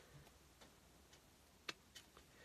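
Near silence, broken by a few faint, sharp clicks, the clearest one near the end.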